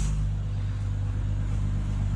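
A steady low hum made of several even low tones, holding level with no rises or breaks.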